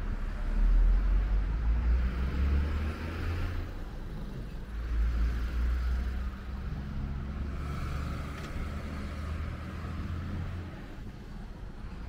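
Road traffic: cars passing, with engine rumble and tyre hiss that swell and fade, loudest about a second in and again around five seconds in.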